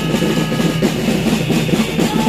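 Drums playing loudly with music, a busy, continuous rhythm.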